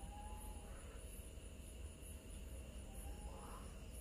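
Quiet background with faint, high-pitched insect chirping, like crickets, pulsing about twice a second over a low steady hum.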